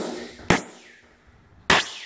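Rubber mallet tapping a vinyl floor plank laid on concrete, seating its interlocking edge into the plank beside it: two sharp knocks, one about half a second in and one near the end.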